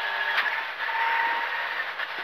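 Škoda rally car at speed heard from inside the cabin: a steady mix of engine and tyre and road noise.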